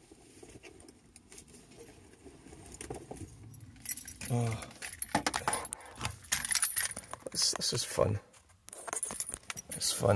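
Car keys jangling amid clicks and rattles of things being handled inside a parked car, starting about four seconds in, with a couple of short murmurs from a voice.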